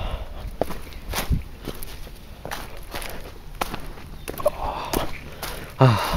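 Footsteps of a hiker walking down a steep forest trail over dry fallen leaves and stones: an irregular series of crunching steps.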